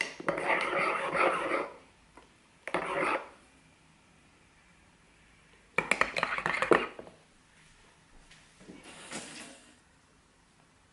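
A metal spoon scraping and clinking against ceramic mugs in four short bursts, the third a quick run of sharp clinks.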